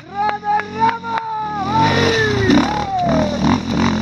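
Dirt bike engine revving up and down with the throttle on a rough climb, with sharp knocks scattered through. From about halfway it gets louder and rougher.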